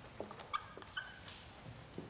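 Marker pen writing on a paper sheet on the wall: a run of short scratchy strokes with a few brief squeaks, the loudest about half a second in and a squeak about a second in.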